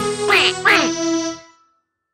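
Two quick falling duck quacks over the last sustained notes of a children's song backing track; the music stops about a second and a half in.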